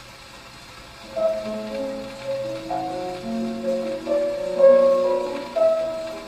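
A pianola (player piano) playing a short passage on a worn 78 rpm shellac record. After about a second of record surface noise, single melody notes come in clearly louder than the softer accompaniment below them: this is the Themodist accenting device at work. Surface crackle runs under the playing.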